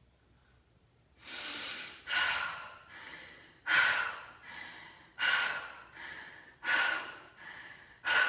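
A woman's forceful, rhythmic Tummo breathing through an open mouth, the first round of deep forced inhales and exhales. After about a second of quiet, a sharp loud breath alternates with a softer one, about one breath every three quarters of a second.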